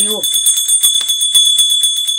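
Small brass hand bell rung rapidly and without pause, a steady high ringing with quick, even strokes.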